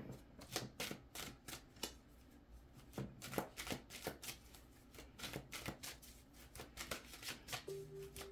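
A deck of tarot cards shuffled by hand, passed from hand to hand, with a quick, irregular run of soft card clicks and slaps.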